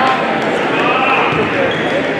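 Live game audio in a gym: a basketball bouncing on the hardwood court, with players' and spectators' voices.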